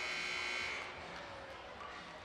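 Gymnasium scoreboard horn giving one steady buzz that cuts off about a second in: the signal that the timeout is over and play resumes.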